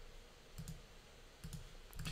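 A few faint, short clicks from working a computer at the desk, spaced roughly a second apart over quiet room tone.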